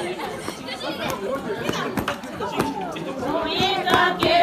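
Many people talking at once, overlapping chatter with a few sharp clicks or knocks. Near the end, held singing voices start to rise over the talk.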